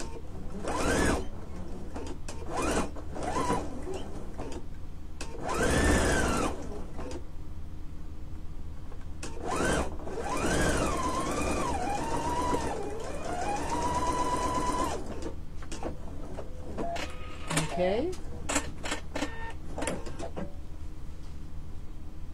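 Husqvarna Viking electric sewing machine stitching in several short runs, its motor whine rising as it speeds up and falling away as it stops. The longest run, about ten seconds in, holds a steady pitch for several seconds.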